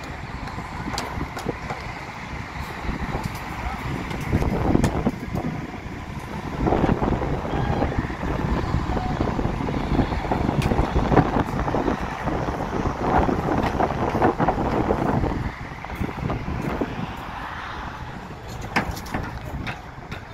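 Wind buffeting the microphone over a low, uneven rumble of vehicle engines, with scattered knocks.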